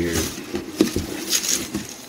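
Birdseed wetted with gelatin being stirred in a stainless steel pot: a rustle of seeds with many small, irregular clicks and scrapes of the utensil against the metal.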